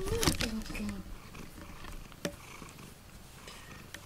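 Domestic cat purring close up while being stroked, a low steady purr, with a single sharp click a little past halfway.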